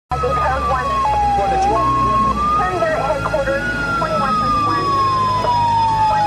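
Siren wailing, its pitch sliding slowly up and down with a few sudden jumps, under short snatches of police-radio voices and a steady low hum.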